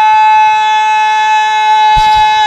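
A man's voice holding one long, steady, high sung note at full voice.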